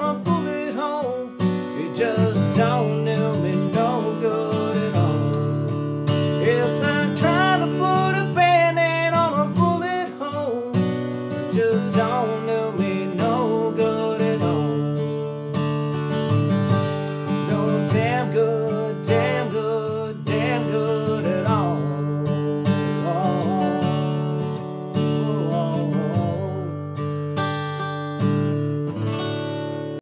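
Steel-string acoustic guitar played solo: strummed chords with melodic fills above them, an instrumental passage of a country song.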